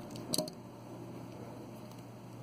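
Hands handling a rubber flip-flop while sewing beads onto it with needle and thread: one brief rustling click about a third of a second in, then only a faint steady low hum.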